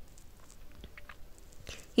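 A pause in a woman's read-aloud narration: quiet room tone with a few faint mouth clicks from the reader before she speaks again.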